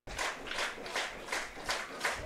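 Steady rhythmic hand clapping, about three claps a second.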